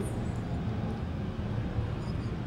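A steady low background hum with faint noise, in a pause between speech.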